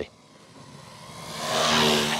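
Electric motor and propeller of an FMS Piper J-3 Cub RC plane growing steadily louder as it makes a low pass, a drone over rushing air. The prop is out of balance on a bent prop shaft.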